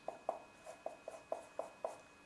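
Marker pen writing on a whiteboard: a quick run of short strokes, about four or five a second.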